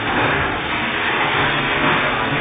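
Steady running noise of a hydraulic hydroforming (water bulging) press and its machinery, loud and continuous without a clear rhythm.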